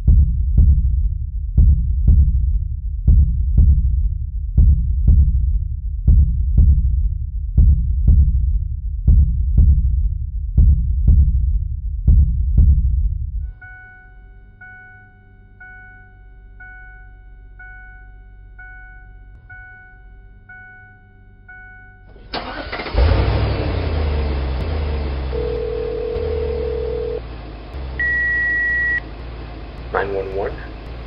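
A deep, heartbeat-like double thud pulses a little faster than once a second and stops suddenly about halfway through. A car's warning chime then beeps about once a second inside the cabin until the car's engine starts and runs. Two short steady tones sound near the end.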